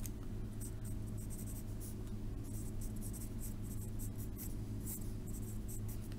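Handwriting on lined spiral-notebook paper: the writing tip scratches in many short strokes as an expression is written out, over a steady low hum.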